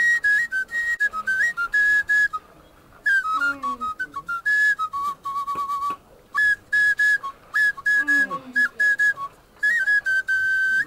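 Background film music: a high, flute-like melody of short notes stepping between a few pitches, broken by brief pauses, with a couple of lower sliding tones beneath it about three and eight seconds in.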